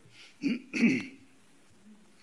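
A man clearing his throat: two short rasps in quick succession, about half a second and a second in.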